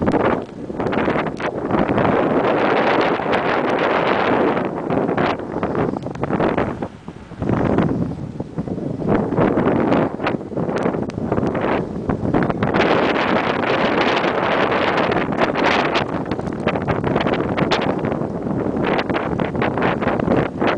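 Wind buffeting the microphone of a camera on a moving road bicycle: a loud, uneven rushing that rises and falls, easing off briefly about seven seconds in.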